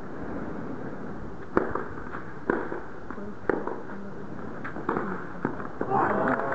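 Tennis rackets striking the ball in a rally: sharp pops about a second apart, five in all, the first the loudest, over a low steady crowd murmur.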